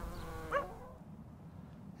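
A brief, faint animal call about half a second in, a short cry that rises in pitch, over low background noise.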